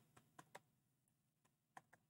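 Faint computer keyboard keystrokes as a new value is typed into a number field: a few light clicks shortly after the start and a quick pair near the end.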